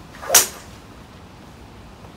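A golf club swung through and striking a ball off a practice mat: one sharp, loud swish-and-crack about a third of a second in.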